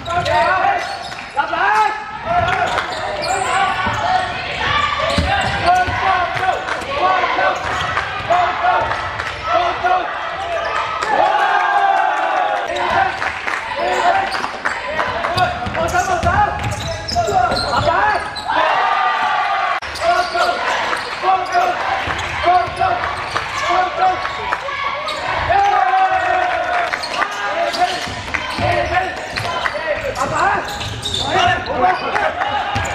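Live sound of a basketball game in a large indoor sports hall: the ball bouncing on the court among the players' and onlookers' voices and shouts, echoing off the hall's walls.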